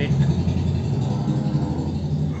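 An engine running, a steady low rumble that rises just before and holds at an even level.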